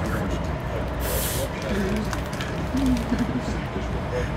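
Steady low rumble of a moving Amtrak Auto Train heard from inside the passenger car, with a brief hiss about a second in and a few quiet murmured words.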